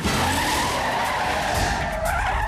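Car tyres squealing in a skid: a loud, sustained screech that cuts in suddenly, with a low rumble underneath.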